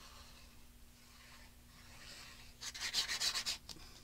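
Fine metal-tipped nozzle of a precision craft glue bottle scraping across kraft cardstock as wavy glue lines are drawn. It is faint at first, then a louder scratchy rub lasts just under a second about three-quarters of the way through.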